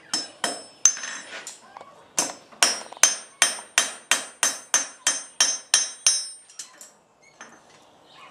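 Blacksmith's hand hammer striking a red-hot iron bar on an anvil, each blow ringing. A few blows over the anvil horn come first, then after a short pause a steady run of about a dozen strikes, some three a second, ending in a few lighter taps.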